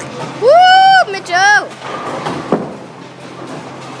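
A person's high-pitched whoop held on one note for about half a second, followed at once by a shorter call that rises and falls, as in cheering at a bowl; a single sharp knock about two and a half seconds in.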